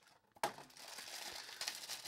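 Crinkling of a thin black plastic bag around a mystery vinyl figure as it is handled and pulled open, starting suddenly about half a second in.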